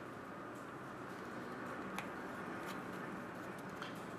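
Faint clicks of trading cards being handled and set down on a table, twice, over a steady low background hum.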